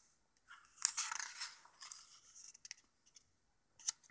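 A paper page of a hardcover picture book being turned: a rustling sweep about a second in, trailing off into smaller rustles, then a soft click near the end.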